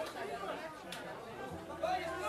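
Audience chatter, a murmur of many overlapping voices in a hall between songs, with a single stray handclap about a second in.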